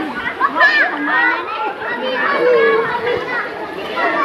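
A group of women's voices talking and calling out over each other in lively, playful chatter, some voices rising high.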